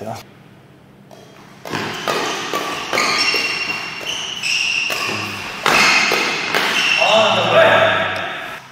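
Badminton rally: rackets striking the shuttlecock with sharp cracks amid repeated high squeaks of court shoes on the court floor. It starts about two seconds in, after a short lull.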